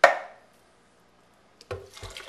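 A single sharp, loud knock of hard objects striking, dying away within about half a second, followed by quiet and a couple of small knocks near the end.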